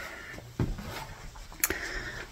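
A person pulling up a leather office chair and sitting down in it: low handling noise with two short knocks about a second apart, the second the sharper.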